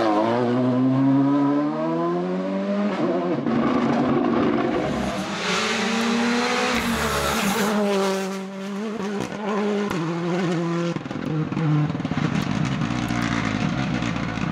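Rally cars at full stage speed. The turbocharged engines rise in pitch through the gears with several drops at the upshifts. About 8 s in, the engine note dips deeply and climbs again as a car brakes and powers out of a corner.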